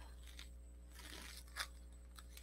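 Faint rustling of loose collage paper pieces being lifted and shifted on paper, with one light tap about one and a half seconds in.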